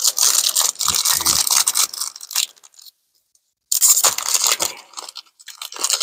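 Foil wrapper of a Pokémon booster pack crinkling and tearing as it is pulled open by hand, with a complete drop to silence for about a second in the middle.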